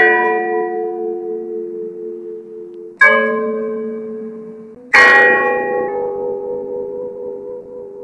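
A deep bell struck three times, at the start, about three seconds in and about five seconds in, each stroke ringing out and slowly fading.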